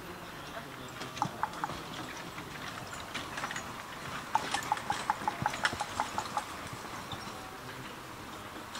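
Hoofbeats of a single horse pulling a four-wheeled marathon carriage at speed: a few strikes a little over a second in, then a quick run of about six a second, loudest around the middle as the turnout passes closest.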